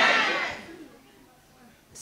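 Murmur of voices and light laughter in the hall fading out within the first second, followed by about a second of silence.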